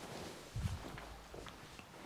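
A person getting up from a sofa and stepping away, heard faintly: a soft low thump about half a second in, then a few light footsteps.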